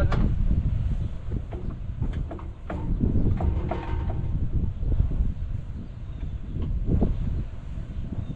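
Wind buffeting the microphone in uneven gusts, with a few light clicks and knocks scattered through it.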